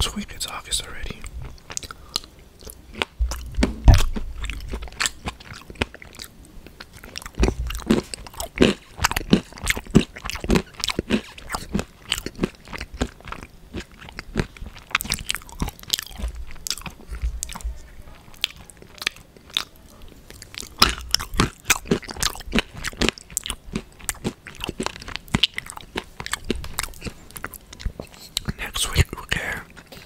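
Close-miked eating: food being bitten and chewed with many sharp, irregular crunches and wet mouth clicks, the loudest about four seconds in.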